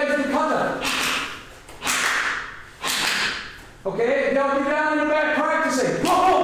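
Three sharp rushing bursts about a second apart, each starting suddenly and fading quickly: a karate uniform snapping, with forceful breath, as strikes are thrown. A man's voice comes before and after them.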